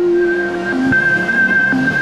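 Electronic logo-intro music: a high synth tone held over a fading low tone, with two short low notes about a second apart.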